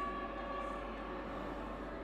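Faint eerie background music: a steady drone of a few held tones over a low hum, with no beat or melody changes.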